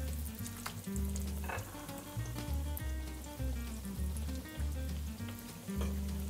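A breadcrumb-coated chicken cutlet frying in hot olive oil in a stainless steel pan, a steady sizzle with small crackles. Background music with a pulsing bass line plays under it.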